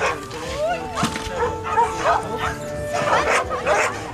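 A dog barking several times over background music, with barks clustered about a second in and again near the end.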